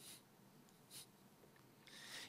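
Near silence: faint room tone, with one short soft noise about a second in.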